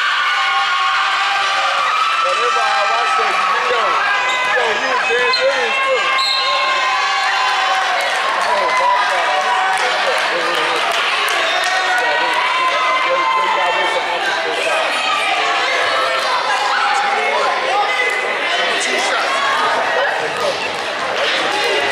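Basketball bouncing on a hardwood gym floor amid the overlapping chatter and shouts of players and spectators.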